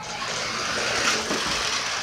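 Remote-control monster truck driving fast across a hard floor, its small motor whirring steadily with the tyres rolling.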